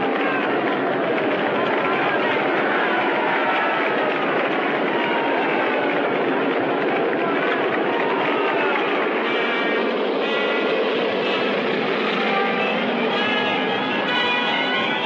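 A crowd cheering and shouting over the steady running of a propeller airplane's engines. About nine seconds in, brass-led orchestral music comes in over it.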